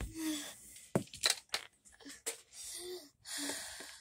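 Breathy, whispery noise with a few short sharp clicks and taps, and brief murmured voice sounds.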